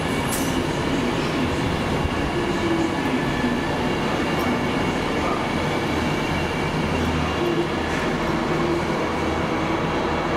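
Avanti West Coast Class 390 Pendolino electric train running past along the platform: a steady rumble of wheels on rail with a faint wavering hum and one sharp click just after the start.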